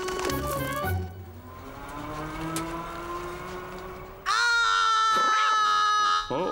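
Cartoon background music with a slowly rising note. About four seconds in, it gives way to an elderly woman's loud, sustained high-pitched vocal note, held steady.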